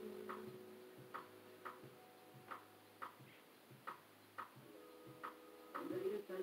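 Faint playback of an instrumental beat's percussion: short dry clicks, each with a soft low thump, in a repeating uneven rhythm of two hits close together and then a longer gap, about every 1.4 seconds.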